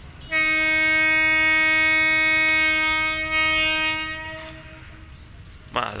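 A train horn sounding one long steady note of about four seconds, fading out a little after four seconds in.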